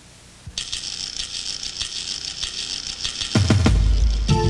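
A rapid, high clicking rattle, like a ratcheting mechanism, starts about half a second in and runs for roughly three seconds. It gives way to a deep low hit near the end as commercial music begins.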